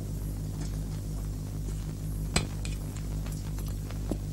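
A low steady hum with a faint regular throb under it, and one sharp clink of a metal spoon against a dish a little over two seconds in.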